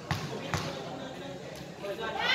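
Basketball dribbled on a concrete court, two bounces about half a second apart, over background voices.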